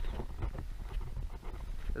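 Wind buffeting the camera microphone: an uneven, gusty low rumble.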